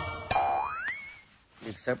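Background music breaks off, and a cartoon-style comic sound effect follows: a single whistle-like tone that glides upward in pitch, levels off about a second in and fades. A man's voice starts speaking near the end.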